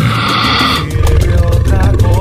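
A lion-roar sound effect used as a DJ drop, lasting under a second, then salsa music comes in with heavy bass.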